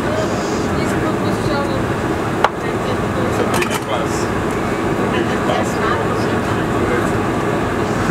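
Cabin noise inside a taxiing Boeing 747-400 airliner: a steady engine and air-conditioning rumble with passengers talking indistinctly in the background. A single sharp click about two and a half seconds in.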